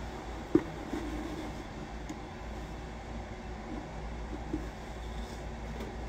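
Steady low room hum, with one light knock about half a second in and a few faint small knocks while a hard resin mask is pulled on over the head.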